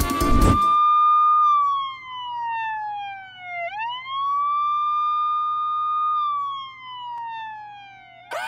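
A siren wailing in a slow cycle: the tone holds high, glides down over about two seconds, sweeps quickly back up and holds, then glides down again near the end. The film's background music cuts off just before it begins.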